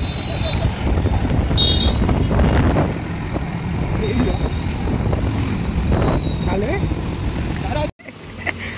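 Road noise from riding on a moving two-wheeler: a steady low rumble of wind on the microphone mixed with engine and traffic noise, with snatches of voices. It cuts off abruptly near the end.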